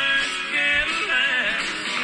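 Music with guitar playing, fairly loud and continuous.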